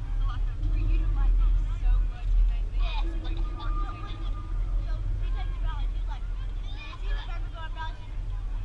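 Distant voices of softball players and spectators calling out and chatting, over a steady low rumble typical of wind on the microphone.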